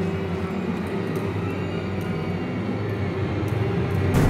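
A low, steady rumbling drone from a horror film's dark ambient underscore, with a few faint ticks scattered through it.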